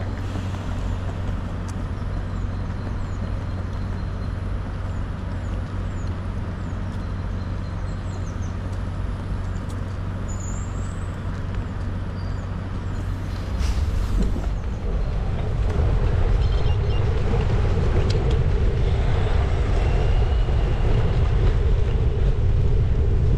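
City road traffic with vehicle engines running, a steady low hum. A short hiss comes about 13 seconds in. From about 15 seconds the sound turns to a louder low rumble, with wind on the microphone as the bicycle moves off.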